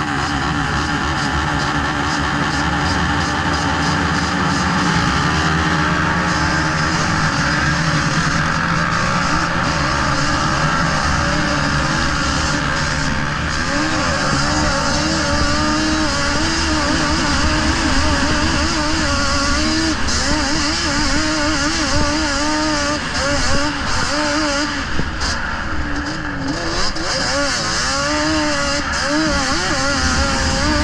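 Racing quad's engine running hard on a snow track, its pitch rising and falling continually with throttle and gear changes.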